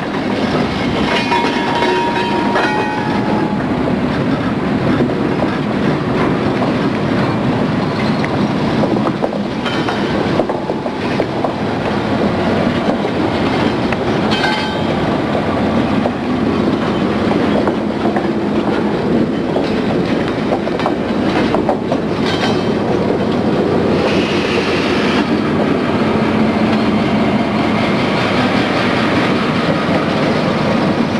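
Freight train of flatcars rolling past at close range: a steady rumble with the clatter of wheels over the rails, and a brief thin wheel squeal about a second or two in.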